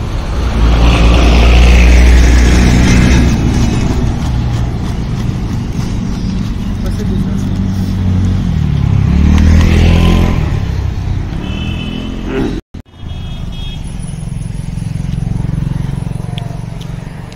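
Motor vehicles passing close by on the street, their engines swelling loudest a second or two in and again around ten seconds. Two short high beeps come near the end, around a brief break in the sound.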